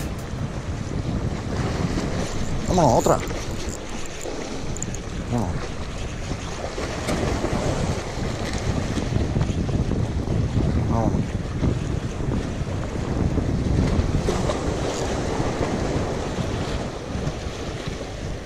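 Wind buffeting the microphone over sea waves washing and splashing against the concrete blocks of a breakwater, steady throughout.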